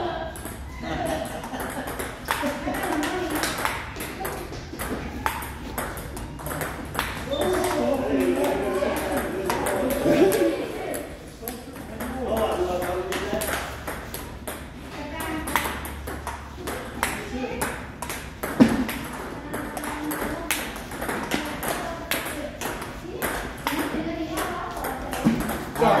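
Table tennis ball clicking off paddles and the table in a continuous rally, many sharp hits, with voices talking in the background.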